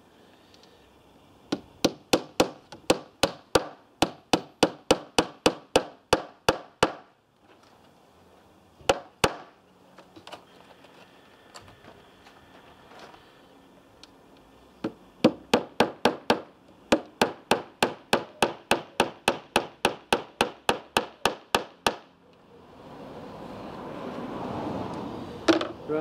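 Hammer nailing into a timber cabinet frame: a long run of quick, even blows, about four a second, then a pair of blows, then another long run. A rising rumble swells near the end.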